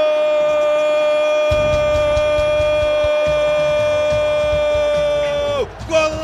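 A Brazilian radio football commentator's long held "gooool" goal cry: one loud shouted note, held steady for about five and a half seconds, that drops off in pitch near the end.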